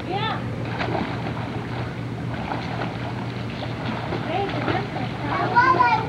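Splashing of a child swimming backstroke in a pool, arms slapping the water. High children's voices call out briefly just after the start and again, louder, near the end.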